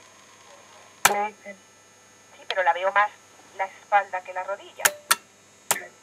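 Becker Mexico valve car radio receiving a broadcast station: short, fragmentary stretches of speech come through its loudspeaker. There is a sharp click about a second in and three more near the end.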